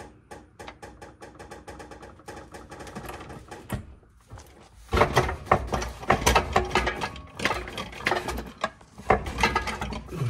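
Hand ratchet wrench clicking rapidly and evenly, then louder and quicker ratcheting with metal knocks from about five seconds in.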